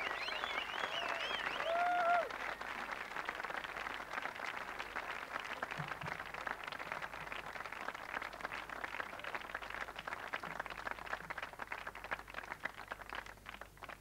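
Audience applauding after a song, with some whistling in the first two seconds; the clapping thins out and dies away near the end.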